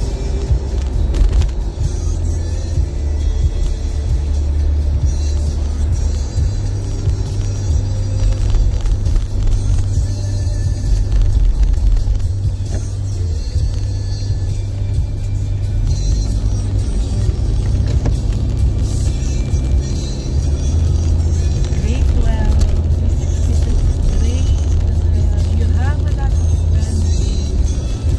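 Car cabin road and engine noise on a highway: a steady low rumble that holds throughout, with music and faint voices underneath.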